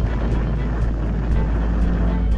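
A deep, steady rumbling roar from a cinematic sound effect, with music faintly beneath it.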